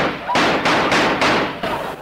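Radio sound effect of a train rushing through a station: a sudden loud rush of noise with rhythmic beats about three a second, fading near the end.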